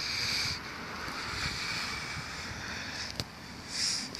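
Steady outdoor noise of wind and river water among broken ice floes, with a single sharp click about three seconds in.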